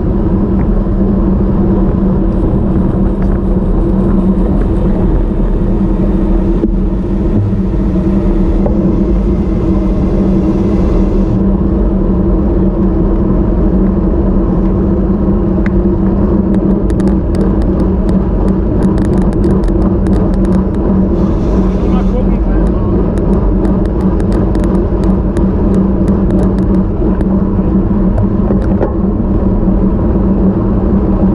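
Loud, steady wind rush over the microphone of a camera mounted on a road bike riding at speed, with a constant low hum underneath.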